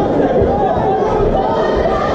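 Crowd of spectators talking and calling out over each other, many voices at once with no single voice standing out.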